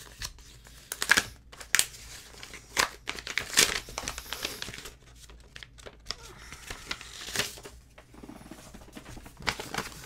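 A paper envelope being opened and handled: irregular rustling and crinkling, broken by several sharp, louder rips and crackles.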